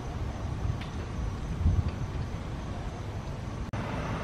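Steady, low rumble of outdoor street noise, like road traffic going by.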